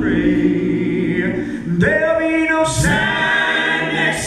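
Male gospel quartet singing a cappella in four-part harmony, holding sustained chords and moving to a new chord a little under two seconds in.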